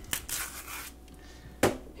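A ripe banana being peeled by hand: a soft tearing rustle of the peel for about the first second, then a single sharp click near the end.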